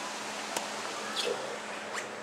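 Steady even background hiss, with a sharp click about half a second in and a short high chirp a little after a second.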